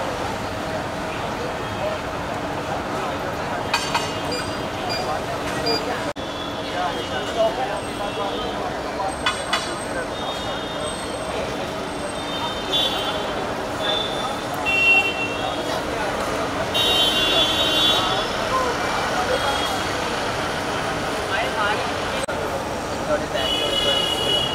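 Busy road traffic with several short vehicle horn honks, over indistinct voices.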